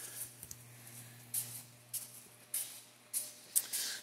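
Soft footsteps scuffing on a concrete shop floor, four or five quiet scrapes spaced unevenly, over a low steady hum.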